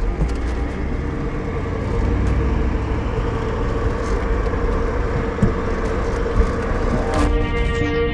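Toyota Land Cruiser Troop Carrier driving on a sandy track: a steady low rumble of engine and tyres, with background music over it. About seven seconds in a short rush of noise leads into the music alone.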